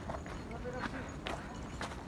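Hurried footsteps crunching on loose volcanic rock and gravel, about two steps a second, over a steady low rumble on the microphone.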